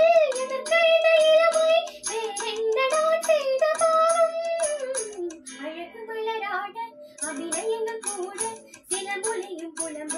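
A young girl singing solo, holding long notes that bend and slide in pitch, over a steady light beat. A little past the middle her voice drops lower and softer for a moment, then rises again.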